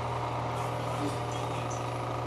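A steady low machine hum with many even overtones, unchanging in pitch and level.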